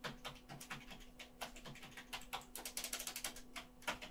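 Typing on a computer keyboard: irregular key clicks, a quick run of keystrokes in the second half, and one louder key strike just before the end.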